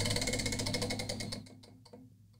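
Tabletop prize wheel spinning, its pointer clicking rapidly over the pegs; the clicks slow down and fade as the wheel comes to a stop about a second and a half in.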